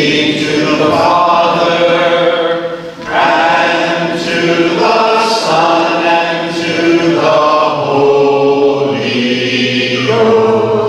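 Congregation and song leaders singing a hymn together in long, held phrases, with a brief break for breath about three seconds in.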